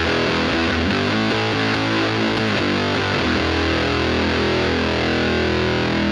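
Distorted semi-hollow electric guitar played through a Fender 4x10 combo amp, heard through a Shure SM57 microphone on the speaker cabinet. Held, fuzzy chords ring out, with a change of chord about halfway.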